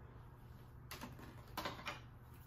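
Light clicks and knocks of small objects, jars and bottles, being picked up and set down on a wooden desktop: one about a second in and two more close together near the end.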